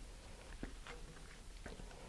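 Quiet room tone with a few faint, scattered clicks and taps from hands handling a plastic model-rocket nose cone.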